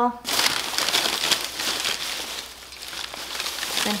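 Crumpled packing paper rustling and crinkling as hands dig through a plastic storage tote, loudest in the first second or so, easing off, then picking up again near the end.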